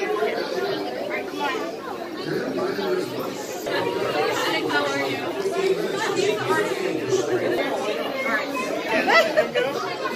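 Indistinct chatter of several people talking at once in a large room, with no single voice standing out.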